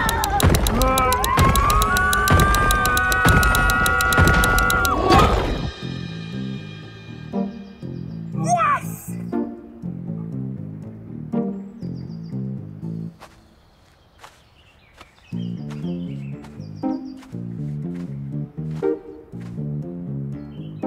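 Background music with a repeating beat. It opens with a loud passage of gliding tones that cuts off about six seconds in, and a single falling swoop comes about eight and a half seconds in.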